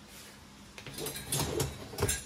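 Wire rack of a Samsung StormWash dishwasher sliding on its rails, with a run of light rattles and knocks starting a little under a second in.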